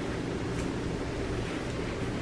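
Steady background hiss and low hum of room noise, with a couple of faint rustles of cotton sweatpants fabric being handled.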